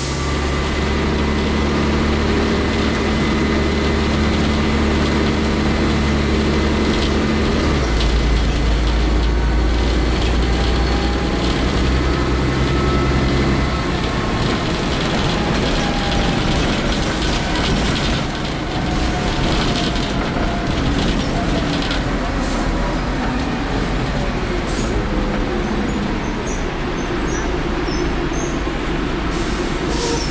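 Interior running noise of a Leyland Olympian double-decker bus, its Cummins LT10 diesel engine and ZF Ecomat automatic gearbox heard from inside the passenger saloon. The engine note changes about eight seconds in and eases off a few seconds later, with steady road and body noise throughout.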